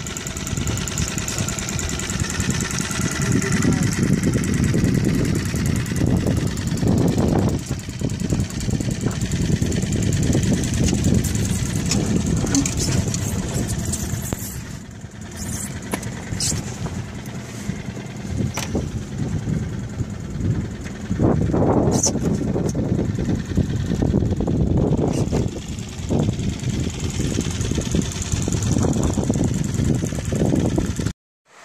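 Small motorboat under way: its engine running steadily, with wind buffeting the microphone.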